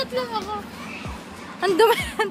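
Speech only: high-pitched voices talking in the street, with a short lull in the middle.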